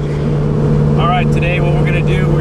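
Twin-turbo 572 cubic-inch big-block V8 of a 1969 Camaro running steadily while driving, heard from inside the cabin as a steady low drone; a man's voice comes in over it about a second in.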